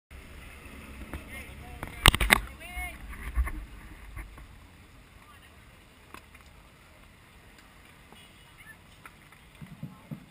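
Outdoor ambience of a crowd of cyclists standing with their bikes: distant chatter, with wind rumble on the microphone over the first few seconds. A burst of loud sharp knocks comes about two seconds in.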